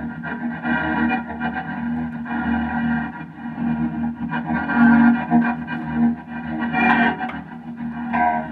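Music: electric guitar through effects pedals and distortion, a sustained, layered drone over a steady low held note.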